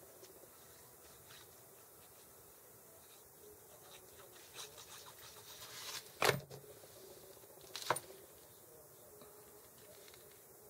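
Hands working paper pieces and a glue pen on a craft table: faint rubbing and rustling of paper, broken by two sharp knocks about six and eight seconds in.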